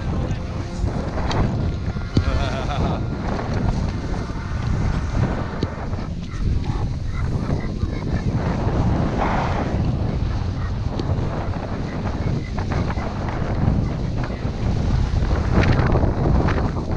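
Wind buffeting an action camera's microphone while skiing downhill, a steady loud rumble, with the skis scraping over groomed snow.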